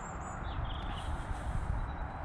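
Outdoor background with a steady low rumble and hiss, and a few faint bird chirps about half a second to a second in.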